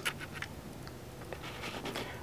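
Quiet pause with faint scratchy rustling over low background hiss, and one small tick partway through.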